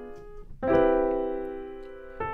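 Piano chords: a diminished chord (D, F, A♭) dies away, then a C major seventh chord (C, E, G, B) is struck about half a second in and left to ring and fade. The B on top is the borrowed note in a chord movement through the C major sixth diminished scale.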